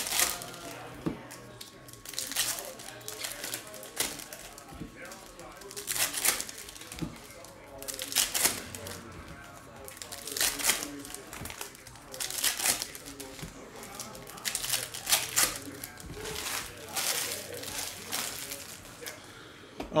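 Foil trading-card pack wrappers being crinkled and torn open by hand, with cards handled between, in crackling bursts every couple of seconds.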